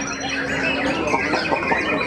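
Dense chorus of caged songbirds, white-rumped shamas (murai batu) among them, all singing at once in rapid overlapping whistles, trills and chatter. A steady low tone runs beneath it and stops about a second in.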